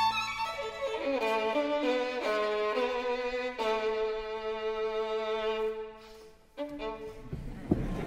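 Solo violin playing a melodic line of stepwise notes, holding one long note in the middle, with a brief break near six seconds. It closes with a short, sharp final stroke just before the end.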